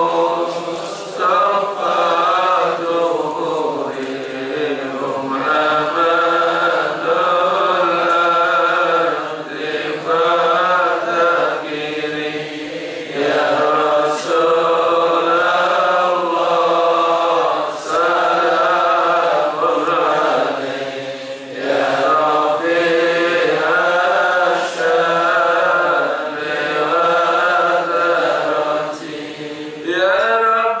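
Man chanting a sholawat, a devotional hymn praising the Prophet, into a microphone in long, held melodic phrases with short pauses for breath.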